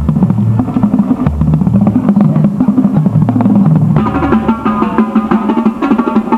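Drum corps drumline playing: rapid drum strokes under the low notes of the tuned bass drums, which step up and down in pitch. Higher-pitched drums join in about four seconds in.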